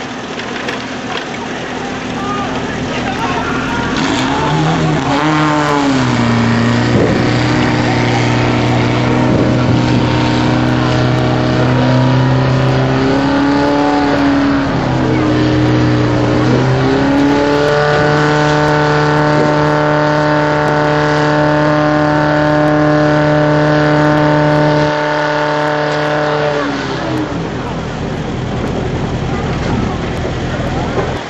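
Portable fire pump's petrol engine starting about four seconds in and revving up and down, then running steadily at high revs while it drives water through the hoses to the nozzles. It cuts back sharply and stops near the end.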